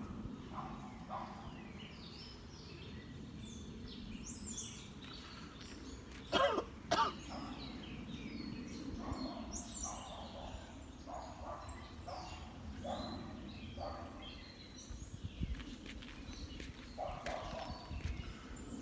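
Two loud coughs about six and a half and seven seconds in, from a man smoking a cigarette, over birds chirping.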